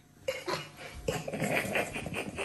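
Dishes and cutlery clinking and clattering in a run of quick, light knocks that starts about a quarter of a second in.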